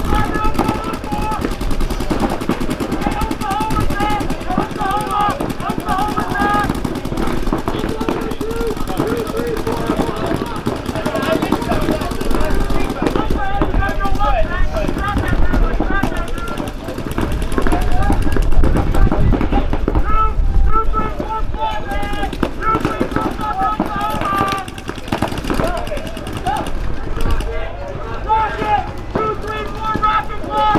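Paintball markers firing in rapid strings during a speedball point, shot after shot with barely a pause, mixed with many voices shouting.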